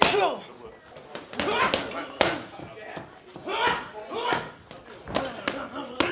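Boxing gloves landing on focus mitts in quick combinations: sharp smacks at irregular intervals, with a flurry of three near the end.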